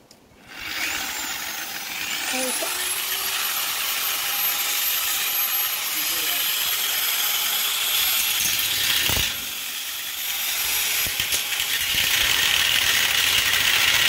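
Angle grinder with a thin cut-off disc spinning up about half a second in, its whine rising, then cutting a steel frame bar with a steady high whine and grinding hiss. The cut eases off briefly about nine seconds in, then carries on louder.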